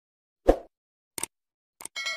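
Subscribe-button animation sound effects: a soft pop about half a second in, a quick double mouse click, then more clicks, and a bell ding starting right at the end as the notification bell is pressed.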